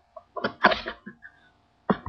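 A person's short, noisy burst of breath about half a second in, sneeze-like, then a sharp click just before the end.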